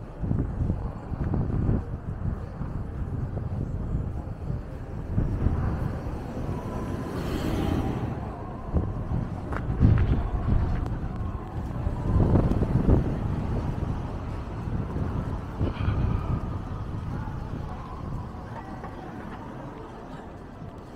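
Outdoor city street sound: traffic on the road with a heavy, uneven low rumble buffeting the microphone. A car passes about seven seconds in.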